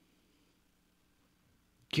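Near silence: a pause in a man's speech with only a faint steady hum, and his voice starting again just at the end.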